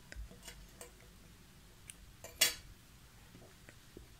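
Light clicks and taps of small hand tools, such as a small crochet hook, handled on a table while a yarn tail is finished off. About half a dozen faint ticks are scattered through, with one much louder sharp clack about halfway through.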